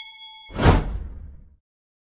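Animated subscribe-button sound effects: the end of a ringing, bell-like notification ding, then about half a second in a loud whoosh with a deep boom underneath that fades out within about a second.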